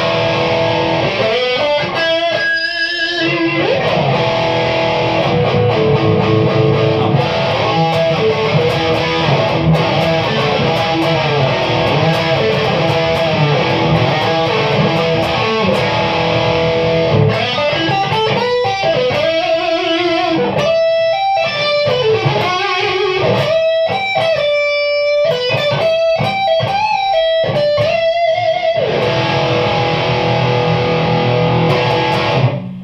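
Electric guitar played through a Boss ME-70 multi-effects pedalboard set to a heavy, distorted amp model with no other effects: chords and riffs, turning to separate held notes with short gaps in the last third.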